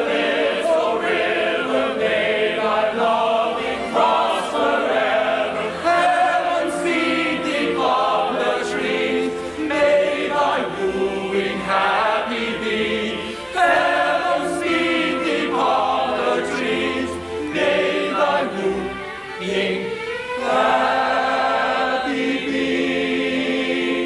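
Operetta chorus singing a slow number in harmony, with light orchestral accompaniment. The sound is dull and muffled, with no highs.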